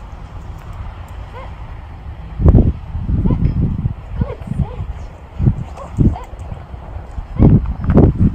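Irregular gusts of wind buffeting the microphone over a steady low rumble. The gusts start about two and a half seconds in and come in loud, uneven bursts.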